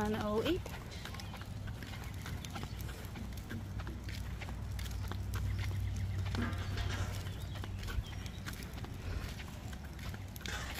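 A Wonderfold wagon's wheels rolling over an asphalt path as it is pushed, with footsteps: a steady low rumble with irregular clicks and knocks. A brief voice sounds at the very start.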